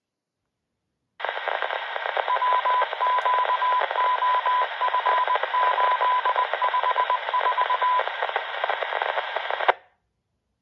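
A Uniden BC125AT scanner's speaker opens its squelch on a narrowband FM signal and plays hissing static. Through most of it runs a keyed tone of long and short beeps in a Morse-code-like pattern. The sound cuts off sharply near the end as the squelch closes.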